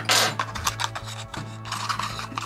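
Cardboard toy-car box rubbing and scraping as its end flap is worked open. The loudest scrape comes right at the start, followed by a few smaller ones.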